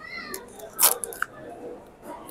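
Thin plastic food tub being opened: a short high squeak, then one sharp crackle of the plastic lid a little under a second in.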